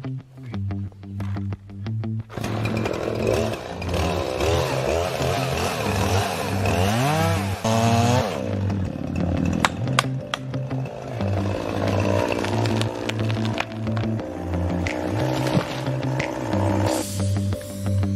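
Gas chainsaw running and cutting through a standing tree trunk, its pitch rising and falling as it bites, starting a couple of seconds in, under background music with a steady beat.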